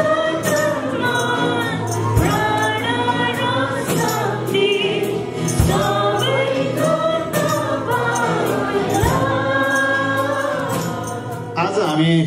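A church worship group singing a song together, several voices in unison over strummed acoustic guitars, with a tambourine jingling in a steady rhythm. The song stops right at the end.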